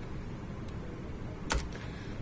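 Faint room tone broken by a single sharp click about one and a half seconds in.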